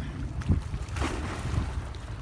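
Wind rumbling on the microphone over river water splashing as a child slides down a wet mud bank into the water, with a short thump about half a second in and a brief splash about a second in.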